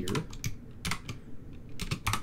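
Typing on a computer keyboard: a few separate keystrokes at an uneven pace.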